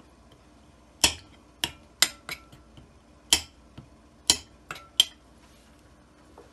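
A metal spoon striking the bottom of a glass mixing bowl in about eight irregular, sharp clinks, some ringing briefly, as it crushes a chicken stock cube into pieces.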